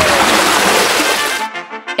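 A splash sound effect for a scene transition: a loud rush of noise that fades out about a second and a half in.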